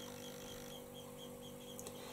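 Quiet pause in speech: faint steady electrical hum and room tone, with a couple of faint ticks near the end.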